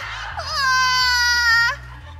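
A woman's long, high-pitched scream as she is folded up inside a wall bed. The end of one scream comes first, then after a short break a second long scream drifts slightly down in pitch and cuts off near the end.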